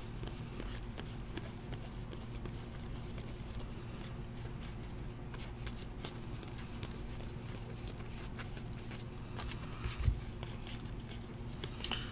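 Faint, quick ticking and rustling of 2018 Diamond Kings baseball cards being thumbed one by one from hand to hand, over a steady low hum, with a soft knock about ten seconds in.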